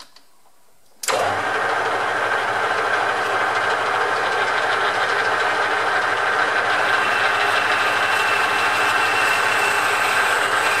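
Metal lathe switched on about a second in: the motor and spindle come up to speed suddenly and then run steadily, the four-jaw chuck spinning, with a loud, even machine noise.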